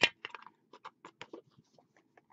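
Light, irregular clicks and taps, about a dozen in two seconds, the loudest at the very start, from hands handling things on a tabletop.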